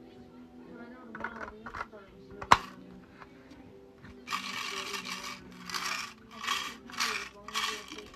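Plastic Lego snow-globe model being handled. A single sharp click about two and a half seconds in, as the small drawer is pushed back into the fireplace base. Then five rustling scrapes in the last few seconds.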